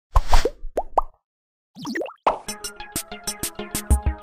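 Intro sound effects: a short burst of noise, then three quick rising bloops, a brief pause and a bubbly gliding flourish. About two seconds in, upbeat background music starts with a quick steady beat and plucked notes.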